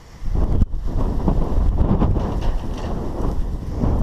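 Loud rumbling wind buffeting the microphone, starting abruptly just after the start, mixed with the rustle of a towel being rubbed over a wet dog's fur.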